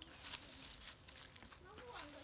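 Kale leaves rustling and crackling against the phone as it is pushed in among the plants. A bird's short falling whistle sounds just after the start.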